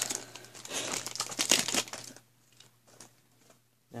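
Foil booster-pack wrapper crinkling and being torn open, a dense run of crackles for about two seconds that then stops.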